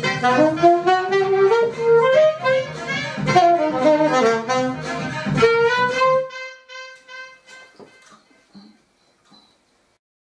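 Alto saxophone playing a quick melodic phrase over a backing track. The backing stops about six seconds in, and the sax ends on one long held note that fades away.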